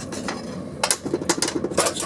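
A metal rod knocking and scraping inside a metal bucket of stove ash, a few sharp clinks from about a second in.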